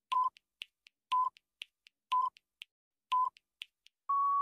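Quiz countdown-timer sound effect: four short electronic beeps, one a second, with a faint tick halfway between each.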